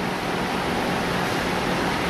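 Steady, even hiss of background noise with no distinct event.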